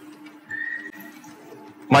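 A pause in a man's speech filled by a faint steady hum, with a brief thin high tone about half a second in; his voice starts again at the very end.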